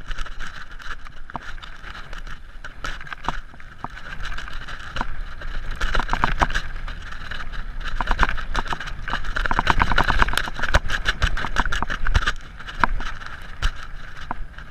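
Mountain bike riding fast down a rough dirt trail: a steady rush of tyre and wind noise with rattling and sharp clicks from the bike over the bumps, busiest and loudest in the middle and later part.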